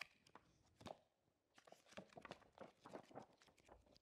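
Faint, crackly rustling of paper pages being turned: scattered small crackles that come thicker in the second half.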